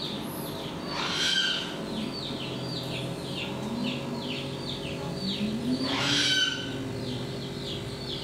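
Background animal calls: a steady run of short, high, falling chirps, about two a second, with two louder calls standing out about a second in and about six seconds in.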